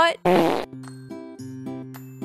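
A short, loud fart-like noise lasting about half a second, a joke on the squishy cat's butt. Light plucked-guitar background music follows.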